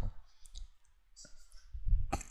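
Computer mouse wheel clicking as a document is scrolled: a few scattered clicks, with a sharper one just past a second in and another near the end.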